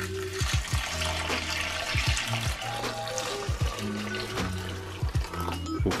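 Hot water poured in a steady stream into a glass bowl of dry textured soy protein, set to soak. Background music with a bass beat plays throughout.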